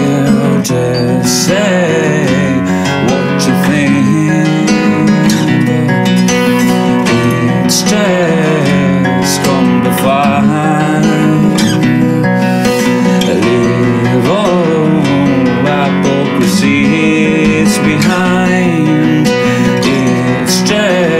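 Nylon-string classical acoustic guitar played solo: a continuous instrumental passage of plucked notes punctuated by sharp strums.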